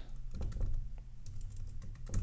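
Typing on a computer keyboard: a quick, uneven run of key clicks as a word is typed.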